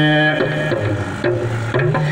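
A man singing in long held notes that step down in pitch, with a few sharp knocks in between.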